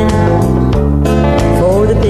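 A recorded country song playing, with guitar accompaniment over a steady bass. Near the end a note in the melody slides up in pitch.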